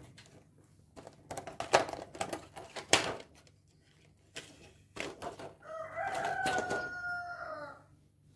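A rooster crows once, a single long call of about two seconds that falls slightly in pitch, in the second half. Before it comes a scattered run of sharp clicks and knocks.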